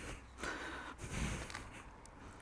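Manual half-moon lawn edger blade pushed into sod and soil: two short, soft gritty scrapes about half a second apart.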